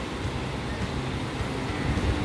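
Steady low noise of surf breaking on a sand beach.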